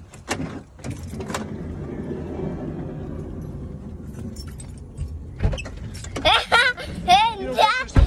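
A car's steady rumble for several seconds with a few light clicks at the start, then one sharp thump about five and a half seconds in. A child's high voice follows near the end.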